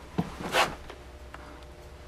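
Light handling noises in a small enclosed space: a sharp click early on, a brief soft rustle about half a second in, and a fainter click a little past the middle.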